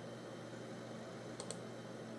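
A computer mouse button clicked once, a quick double tick of press and release about one and a half seconds in, over a faint steady hum.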